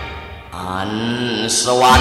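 A male singer of a Thai luk thung song begins a held, wavering vocal line. It comes after a brief lull in the band about half a second in, and the full band comes back in near the end.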